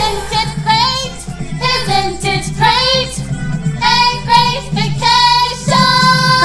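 A song sung over its instrumental backing track, with sung phrases in short bursts and some notes sliding in pitch.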